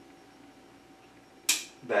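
Concave bonsai cutters snipping through a small Japanese maple branch: one sharp snap about one and a half seconds in.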